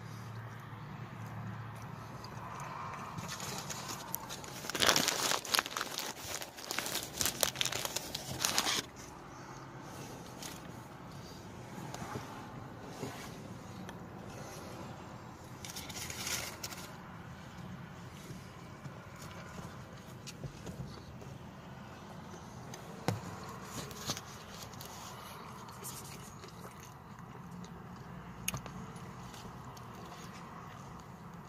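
Paper food wrapper crinkling and rustling in bursts: a dense spell of about four seconds starting some five seconds in, a shorter one midway, and a single click later, over a low steady hum.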